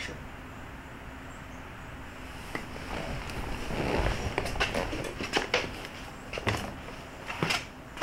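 A person shifting on a car seat and climbing out through the open driver's door: rustling, then a series of light knocks and clicks in the second half.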